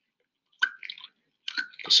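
Plastic transfer pipette squeezed in a test tube of liquid, giving a few short squishing, bubbling sounds about a second in and again near the end as the solution is mixed down to the bottom of the tube.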